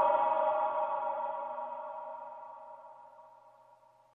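Background music's final held chord ringing out after the beat stops, a steady cluster of sustained synth tones fading away to silence over about three and a half seconds.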